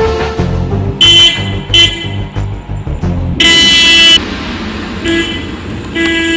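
Car horn honking in separate blasts: two short toots in the first two seconds, a longer, louder blast about halfway through, and another short toot near the end. Background music with a low beat plays underneath.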